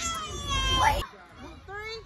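Children shouting and squealing during noisy play. The loud voices and background cut off suddenly about a second in, and a quieter high call follows near the end.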